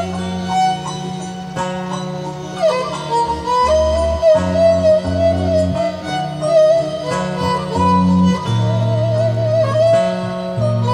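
Instrumental interlude of Sundanese tembang Cianjuran in laras mandalungan: a violin plays a wavering melody with vibrato over kacapi zithers plucking a steady pattern of low notes.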